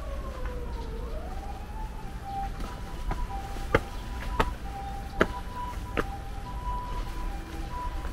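An emergency-vehicle siren. It first slides down in pitch and back up, then settles into a steady alternating two-tone hi-lo pattern. A few sharp clicks come in the middle.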